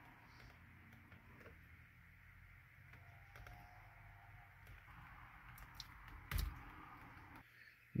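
Faint small clicks and ticks of plastic as a screwdriver pries the green airbag wiring connector loose, with one sharper click near the end.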